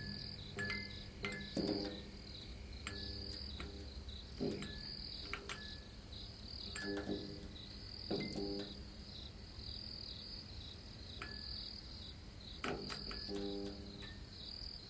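Crickets chirping steadily in a faint, high, pulsing trill, with a brief low pitched sound now and then.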